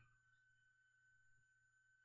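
Near silence, with only a faint steady hum and thin tones.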